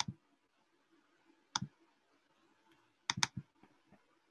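Computer mouse clicking: a single click, another about a second and a half later, then a quick double click about three seconds in.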